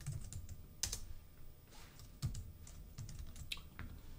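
Faint typing on a computer keyboard: a scatter of irregular keystrokes.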